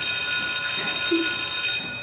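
Electric school bell ringing: a loud, steady, high-pitched ring that cuts off just before the end.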